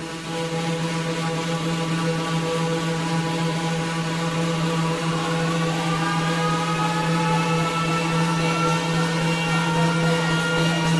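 Intro of an electronic dance track: a sustained, buzzing synth drone on one low note, with higher tones slowly rising above it in the second half and no beat yet.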